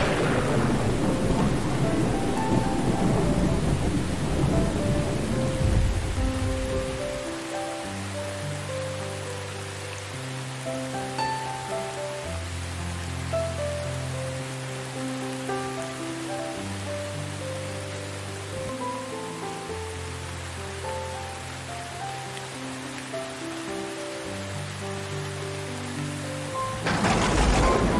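A thunderclap rolling away over steady rain: the rumble is loudest at the start and fades out over the first six or seven seconds. After that the rain goes on evenly under soft, slow music with long held notes.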